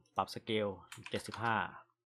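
A few computer keyboard keystrokes, typing a value, heard under a man talking.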